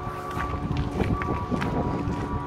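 Footsteps of someone walking along a paved street, with wind rumbling on the microphone, over soft background music holding long notes.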